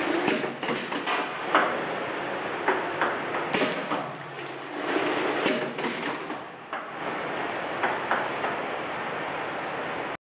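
Pneumatic piston paste-filling machine cycling: several short bursts of compressed-air hiss from its valves and cylinders, with sharp knocks and clicks of the pistons moving between them.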